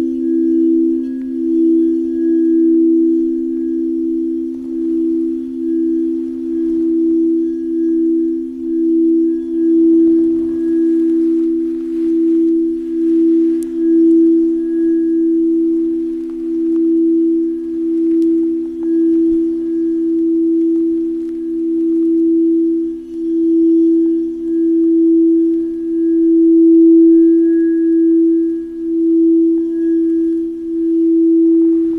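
Two clear crystal singing bowls sung by wands circling their rims: a sustained hum of two low tones held together, the upper one pulsing in a slow wobble while the overall sound swells and dips.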